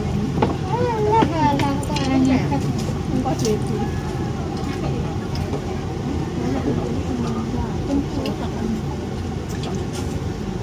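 Busy eatery ambience: several people talking at once over a steady low background rumble, with a few light clicks.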